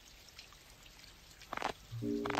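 Faint steady rain with scattered drips, two sharper drops landing about one and a half seconds in. A low music note begins at the very end.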